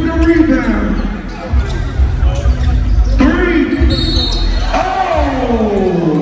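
A basketball bouncing on a hardwood gym floor during a game, with loud voices and music in the hall over it.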